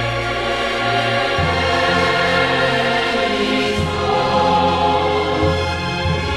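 Choral background music: a choir holding sustained chords over a low bass line that moves to a new note three times.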